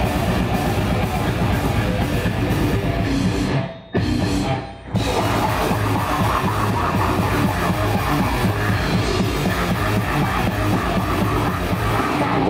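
A heavy metal band playing live: distorted electric guitars, bass and drum kit. The whole band cuts out together for two short breaks about four seconds in, then plays on.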